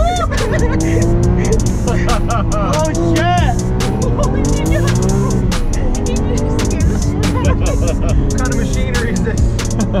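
Lamborghini engine under hard acceleration, heard from inside the cabin: the revs climb, drop sharply at each upshift and climb again, about three times.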